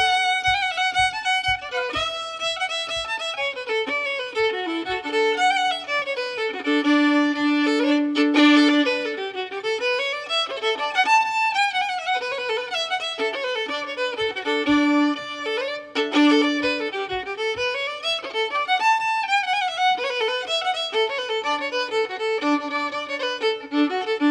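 Fiddle playing a lively tune in quick runs of notes with sliding rises and falls, over acoustic guitar accompaniment. A low steady beat of about four a second sounds under it for the first few seconds and again about two-thirds of the way through.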